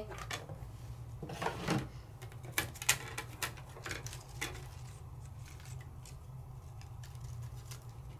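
Plastic die-cutting plates and a thin metal die being handled on the machine's platform: the top cutting plate is lifted off and set down and the die is lifted from the cut paper, giving light scattered clicks and taps, the loudest a brief scrape and knock about a second and a half in.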